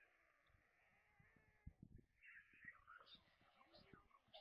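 Faint sounds of young white storks flapping their wings on a stick nest: soft low thumps and rustling, with scattered short high squeaks from about halfway through.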